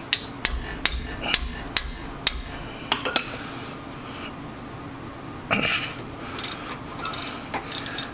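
About eight sharp metal-on-metal hammer blows, roughly two a second, in the first three seconds. The hammer is striking a ratchet to break loose a stubborn 14 mm rear brake caliper bolt. Softer tool handling clatter follows.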